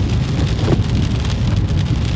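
Rain hitting a moving car, heard from inside the cabin, over a steady low rumble of the car driving on the wet road.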